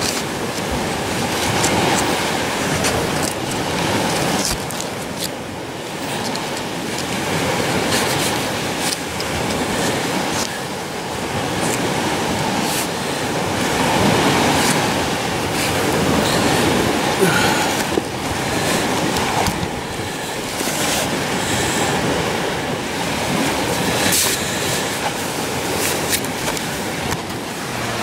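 Digging, scraping and prying at a chunk of frozen gravelly sediment to free it whole: continuous gritty scraping with many sharp clicks of stones and grit.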